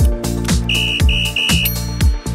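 Upbeat electronic background music with a steady kick-drum beat, with three short electronic beeps past the middle as a countdown timer runs out, then a higher ringing tone near the end that marks the answer reveal.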